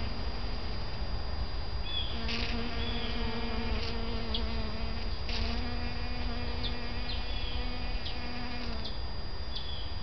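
Bees buzzing close by, a steady hum that breaks off and returns as they move: it drops out about a second in, comes back at two seconds, pauses briefly around five seconds and stops near nine seconds.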